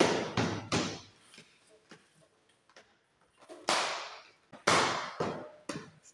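White plastic cable-trunking cover being pressed and snapped onto its base by hand: a series of sharp plastic knocks and clicks. The loudest come about three and a half and four and a half seconds in.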